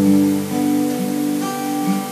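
Acoustic guitar playing a chord pattern in G, with single ringing notes plucked about twice a second over sustained lower notes.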